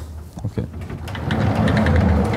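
Chalk writing on a blackboard: quick tapping and scraping strokes, busier in the second half, over a low steady hum.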